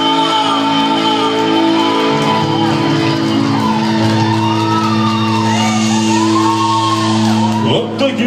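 A rock band playing live through a club PA, holding long sustained notes, with shouts and whoops from the audience over it. The sound dips for a moment near the end.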